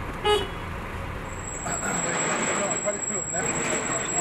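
A short car-horn toot just after the start, then steady street traffic noise with indistinct voices and a thin, steady high-pitched whine.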